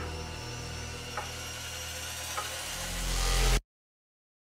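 Intro sound-design riser: a noisy whoosh over a low held drone that swells in loudness with a deepening rumble, with a couple of faint ticks, then cuts off suddenly about three and a half seconds in.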